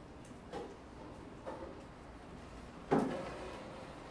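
Library reading-room ambience: a steady faint room hiss broken by small knocks from the desks, two soft ones early and a sharper one about three seconds in that rings on briefly.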